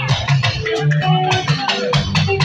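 A live juju band playing, with drums and percussion keeping a steady beat over a bass line and held instrument notes.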